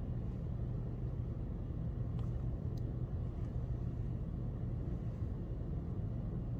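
Steady low rumble of background noise, with a couple of faint ticks a little over two seconds in.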